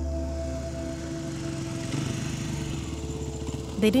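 A motorcycle engine running, a fast even low pulsing that fades in about a second in, while a low sustained musical drone fades out.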